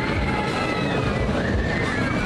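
Fairground ambience: music playing over a busy crowd, with high voices rising and falling above it.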